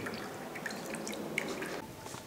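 Melon juice dripping and trickling from a plastic sieve into a bowl of liquid, with many small wet ticks as the pulp is pressed by hand.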